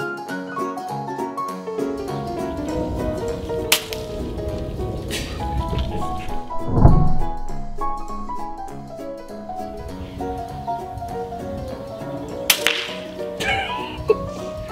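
Background music with a steady melody, over which a PCP air rifle fires: sharp cracks about four, five and twelve and a half seconds in. A loud low thump comes about seven seconds in.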